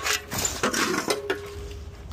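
Loose metal clinking and knocking several times in quick succession, with a short ringing tone about a second in.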